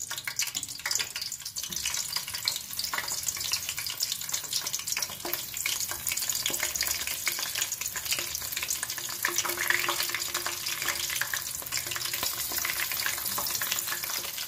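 Whole green chillies and dried red chillies frying in hot cooking oil in a pan: a steady sizzle full of fine crackles.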